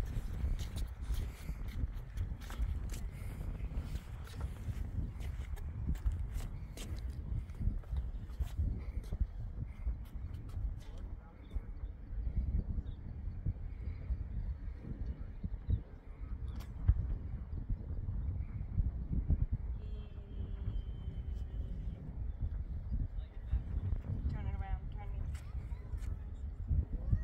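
Wind buffeting the microphone in a low, fluctuating rumble, with scattered light knocks and clicks, most of them in the first half.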